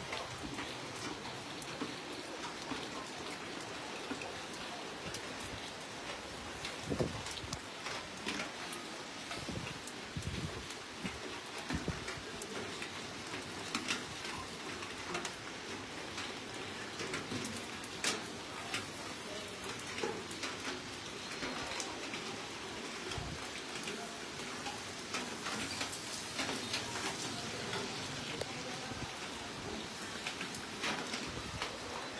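Steady rain falling and pattering on surfaces, with scattered sharper drip-like taps.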